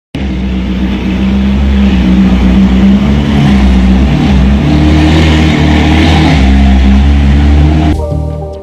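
A sports car's engine running loud and steady, its pitch shifting slightly up and down with the revs. It cuts in suddenly.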